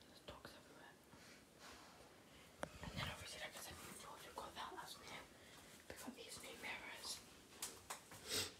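Faint whispering, with a few small clicks and knocks of handling.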